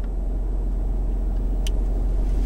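Car running, a steady low rumble heard from inside the cabin, growing slightly louder near the end, with one faint click.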